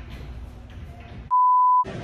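A censor bleep: one steady high pure-tone beep, about half a second long, coming in about a second and a half in, with all other sound cut out beneath it.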